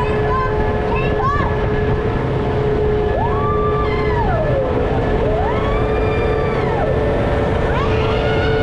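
Vekoma suspended looping coaster train climbing the lift hill, with a steady hum over a low rumble. Riders call out long whoops that rise, hold and fall, two in the middle and another starting near the end.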